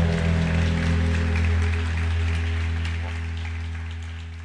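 A live band's final low chord held and ringing out, with scattered applause over it. The sound fades steadily over the last two seconds.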